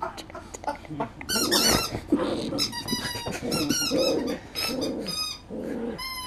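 Poodle play-growling while a rubber chicken squeak toy gives many short, high, wavering squeals in quick succession, starting about a second in.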